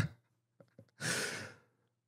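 A man's breathy sigh into a close microphone about a second in, as laughter trails off at the start.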